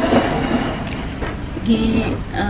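Tableware being handled on a table: a ceramic plate slid and set down and a fork moved, with a few clinks and knocks, over a steady low rumble. A woman's voice comes in briefly near the end.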